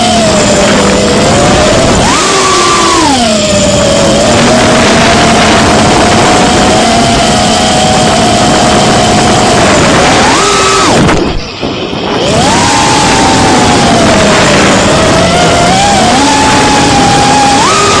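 FPV quadcopter's brushless motors and propellers whining, heard from the onboard camera on a 3S battery; the pitch jumps up with throttle punches about two seconds in and again near ten seconds, settles to a steady drone between. Around eleven seconds the whine cuts out almost completely for about a second, as the throttle is chopped, then climbs back.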